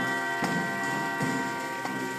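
Marching band holding one long sustained brass chord, punctuated by three drum strikes.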